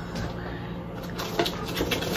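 A couple of light clicks from plastic food containers being handled while unpacking a suitcase, over a steady low hum.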